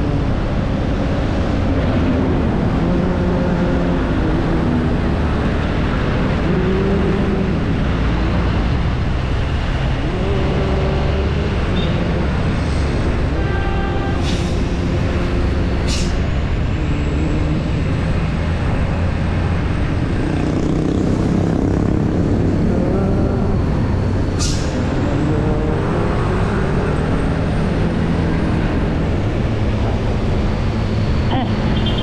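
Vehicle on the move: a steady, loud rumble of engine and road noise.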